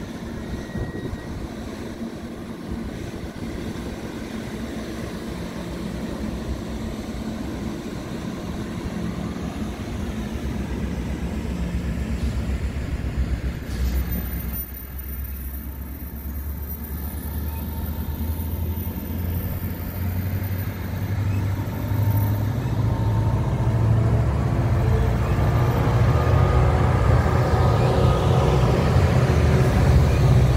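NJ Transit passenger coaches rolling past with a steady low rumble of wheels on rail. In the last several seconds the diesel engine drone of the two locomotives pushing at the rear swells in as they approach.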